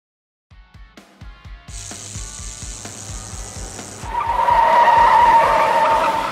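Produced intro sting: music with a fast, steady bass beat, joined about four seconds in by a loud tyre-screech sound effect that cuts off suddenly.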